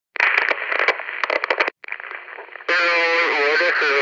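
Voice audio that sounds as if it comes over a radio: choppy, narrow-band voice chatter at first. About two-thirds of the way in, a fuller voice starts abruptly and holds long notes.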